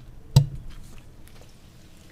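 Microphone handling noise on a just-unmuted microphone: a sharp click about half a second in, then low hiss with a few faint ticks.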